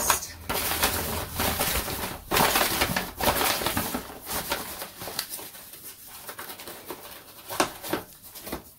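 Paper gift bag rustling and crinkling as a hand rummages inside it among torn paper slips. The crinkling is busiest in the first half, then thins out to scattered, quieter crackles with one sharper crinkle near the end.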